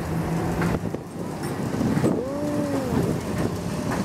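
Low rumble of a heritage electric tram moving off along its rails, with a brief rising and falling tone about two seconds in.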